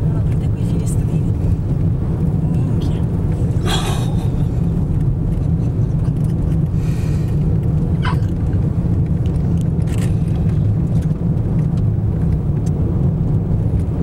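Heard from inside a car cabin, a steady low rumble of strong gusty wind buffeting the car together with road noise, as it drives through a dust-laden thunderstorm outflow.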